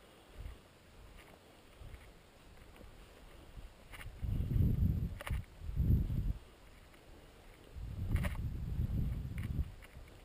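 Footsteps on a leaf-covered grassy trail and rustling as spruce branches brush past, in soft low thuds with a few sharp clicks. Quiet at first, louder from about four seconds in, in three spells.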